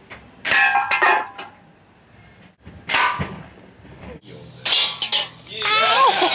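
Air rifle shots at metal beer cans: sharp cracks and clangs of pellets hitting the cans, some ringing briefly, about five hits in all across quick cuts. Laughter breaks out near the end.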